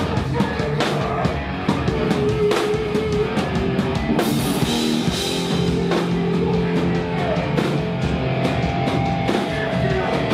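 A live rock band playing loud and fast: distorted electric guitars and bass over a drum kit with steady pounding hits and crashing cymbals, and a vocalist singing into a microphone.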